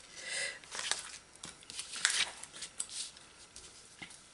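Paper sticker sheets being handled: a run of short papery rustles and small ticks as a sticker is peeled from its sheet and pressed onto a planner page.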